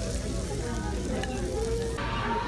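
Fajitas sizzling on a hot skillet, a steady hiss, with faint restaurant voices underneath.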